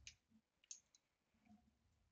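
A few faint, light clicks of wooden colored pencils being set down and picked up while one pencil is swapped for another: one click at the start and two close together just under a second in.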